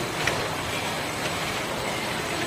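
Wrap-around labeling machine and its bottle conveyor running with a steady mechanical noise, with one short click shortly after the start.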